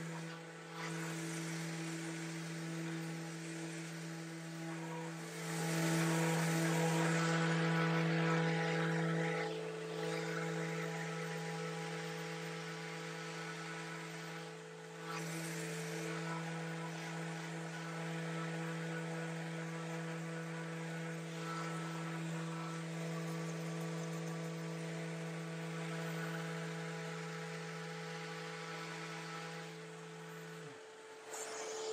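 Electric random-orbit sander with a dust-extraction hose running steadily on a dyed quilted-maple guitar body, sanding back the dye to lighten it. Its hum grows louder for a few seconds about six seconds in.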